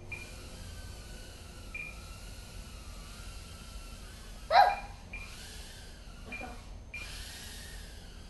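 Blade Inductrix nano quadcopter's ducted motors whining as it flies, the pitch wavering up and down with the throttle. About halfway through comes a brief, loud, high-pitched squeal, with a fainter one a couple of seconds later.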